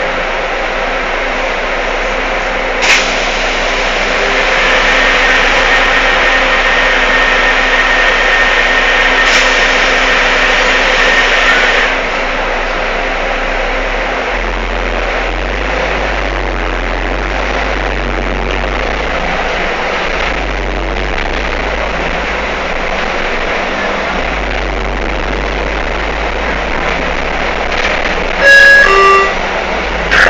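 Steady running noise inside an articulated bus's cabin, louder with a steady whine for several seconds in the first half. Near the end comes a short, loud pitched signal that changes pitch.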